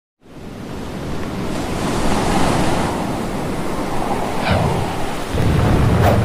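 Ocean surf washing steadily, fading in over the first second, with a short falling cry about four and a half seconds in.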